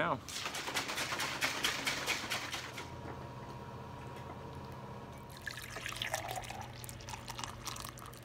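A quick run of clicks and rattles over the first few seconds, then coffee pouring into a mug toward the end.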